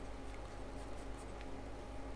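Faint scratching and a few light taps of a stylus on a pen tablet as a word is handwritten, over a steady low hum of room tone.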